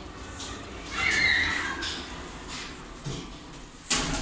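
Express Evans passenger lift, its car doors closing after the ground-floor button is pressed: a high, slightly falling squeal lasting under a second about a second in, then a soft low knock near the end.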